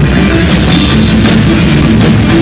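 Live heavy metal band playing loud: electric guitar over a full drum kit, a dense, unbroken wall of sound.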